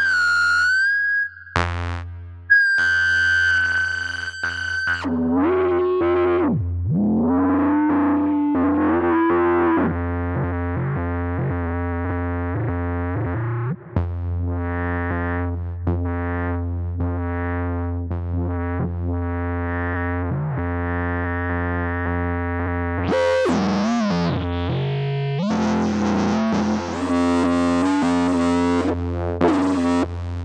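A software synthesizer patch in Reaktor Blocks (West Coast DWG oscillator through a low-pass gate, Driver distortion and Rounds reverb) playing: a thin high tone for the first few seconds, then lower notes that slide up and down in pitch over a steady deep bass drone. About 23 seconds in the sound swells brighter and harsher before settling back.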